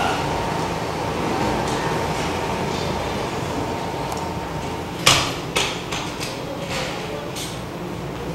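Sharp impacts from a Kuk Sool Won martial-arts form performed on a wooden floor: a loud one about five seconds in, a second about half a second later, then a few fainter ones, over steady room noise.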